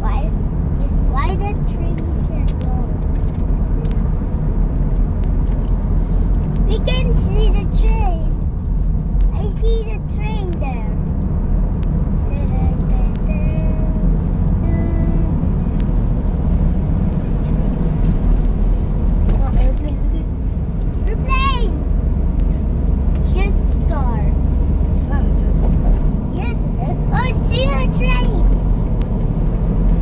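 Steady low rumble of tyres and engine heard from inside a moving car's cabin at road speed, with brief snatches of voices now and then.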